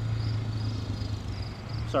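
Insects chirping in a high, even pulse about four times a second over a steady low rumble, while a small wood fire burns with sprayed acetone.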